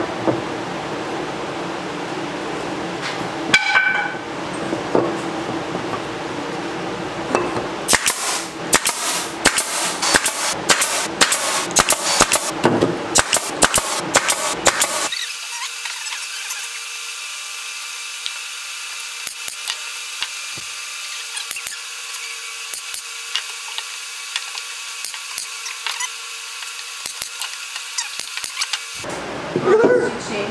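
Power-tool and knocking sounds from building a wooden frame. A dense run of rapid sharp knocks and clicks comes in the middle, followed by a steadier hum.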